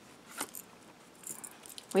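Faint handling sounds as a card is slid up and lifted off the spread by a hand wearing beaded bracelets: a light click about half a second in, then soft rustles and small ticks.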